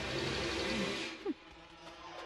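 Steady hiss with a short voice sound, cut off abruptly a little over a second in, giving way to faint background music with held notes.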